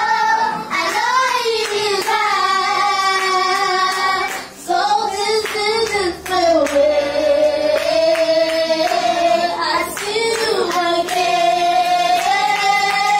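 Group of children singing together in long held notes, with a short break between phrases about four and a half seconds in.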